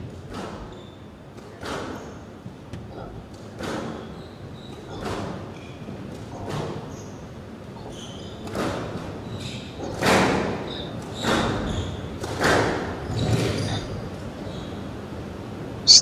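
A squash rally: rackets striking the ball and the ball knocking off the court walls, a sharp knock every second or so, with a cluster of louder strikes near the end.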